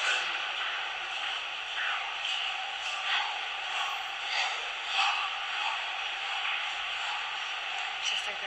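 Steady background hiss of a large hall with indistinct distant voices and a few faint brief sounds.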